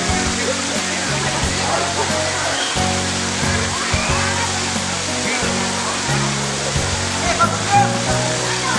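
Steady rush of water pouring from pool mushroom fountains, mixed with background music carrying a bass line of changing low notes, and scattered voices.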